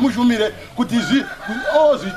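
A man's voice preaching aloud.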